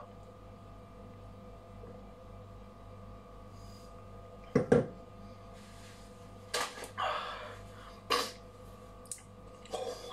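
Steady low electrical hum of a small room, with scattered short sounds of someone tasting a sip of beer: one sharper, louder sound about halfway through, then several softer breaths and mouth noises in the last few seconds.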